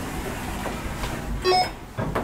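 ALT hydraulic elevator car running with a steady mechanical hum as it comes into the floor, then a short electronic chime about one and a half seconds in signalling its arrival.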